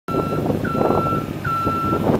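Motion alarm of a JLG 3394RT rough-terrain scissor lift beeping: long, steady beeps repeating a little faster than once a second, over the steady running of the lift's engine.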